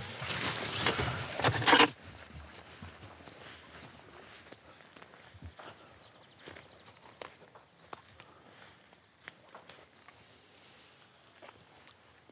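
Footsteps of people walking through heather and dry grass, with faint rustling and scattered light snaps. This follows a louder stretch of noise inside a car that stops abruptly about two seconds in.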